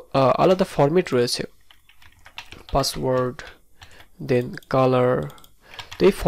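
Typing on a computer keyboard: a quick run of key clicks between stretches of a man talking.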